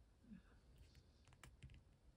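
Near silence, with a few faint small clicks about one and a half seconds in: fingers handling a jig head and soft plastic bait.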